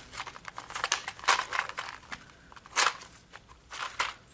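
Clear plastic blister pack clicking and crinkling as a small flair badge is pushed out of it by hand: a run of small sharp clicks, with louder crackles about a second and a half in, near three seconds and near the end.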